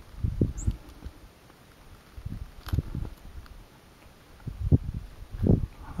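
Irregular low rumbles and thumps on the microphone of a handheld camera, coming in three clusters, with one sharp click about halfway through.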